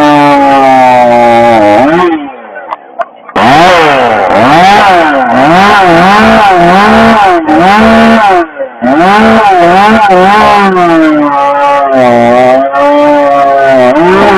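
Husqvarna 562 XP two-stroke chainsaw running at high revs, its pitch rising and falling over and over as the throttle is worked. It drops away for about a second and a half about two seconds in, then comes back, with another brief dip about halfway through.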